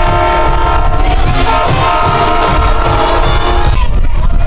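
A loud, steady horn chord of several notes held together, breaking off briefly about halfway through, then resuming and cutting off abruptly just before the end, over a low rumble.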